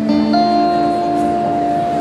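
Electric guitar chord struck near the start and left ringing steadily through an amplifier.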